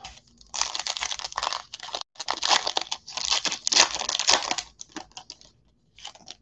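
Foil wrapper of a football trading-card pack being torn open and crinkled in the hands, in two long crackly stretches followed by a few lighter rustles.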